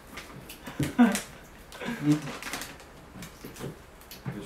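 Plastic grocery bags and packaging rustling and crinkling as they are handled, under short bits of voice: an exclamation about a second in and a laugh near the middle.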